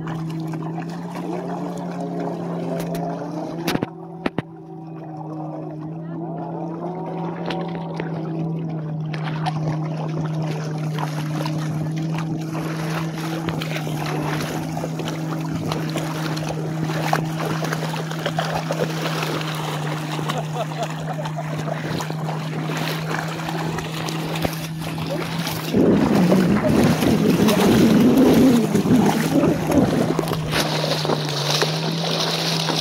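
A personal watercraft engine idling with a steady low hum, with water splashing around wading legs that gets louder near the end.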